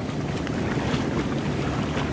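Ocean surf washing in over the sand, a steady rush of water and foam, with wind buffeting the microphone.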